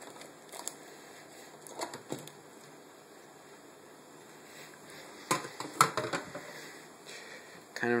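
Plastic bag crinkling as a plate is lifted off a stainless steel bowl of soaking water, then a quick run of clinks and knocks of dishware against the steel bowl about five to six seconds in.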